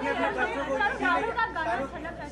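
Several voices talking at once: indistinct chatter of a small crowd, with no one voice standing out.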